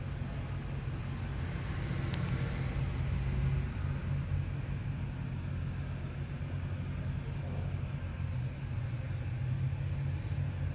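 Steady low rumble of background noise.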